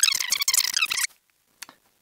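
High-pitched, fast-chattering sound of fast-forwarded audio, stopping abruptly about a second in. Then it goes quiet apart from one faint click.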